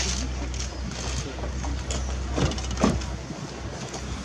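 Rear door of a black Mercedes-Benz S-Class saloon being pulled shut with a solid thump about three seconds in. A low, steady hum sits underneath, with a crowd's commotion around the car.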